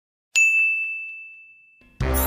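A single high, bell-like ding struck about a third of a second in, its one clear tone ringing out and fading away over about a second and a half.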